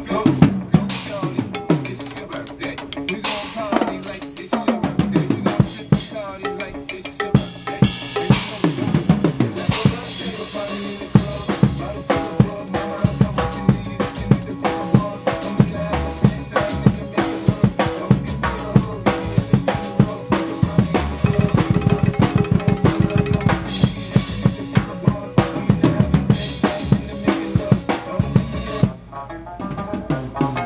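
Acoustic drum kit played live in a fast, busy solo passage, with strokes on drums and cymbals over steady pitched backing. About three-quarters of the way through comes a rapid unbroken run of strokes, and the playing drops back briefly near the end.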